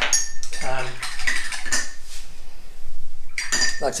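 A paintbrush clinking against a hard ceramic or glass paint dish, tapping and scraping as paint is mixed or the brush is rinsed. There is a run of light clinks over the first couple of seconds and another short run near the end.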